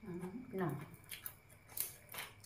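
A person chewing crunchy food close to the microphone, a short crisp crunch about every half second. A voice speaks briefly in the first second.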